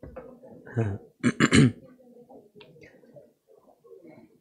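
A man's voice: a short "haan" about a second in, then a louder brief vocal sound, followed by faint low rustling.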